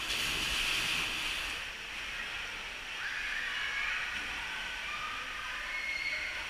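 Water running down a fibreglass water slide flume, a steady hiss.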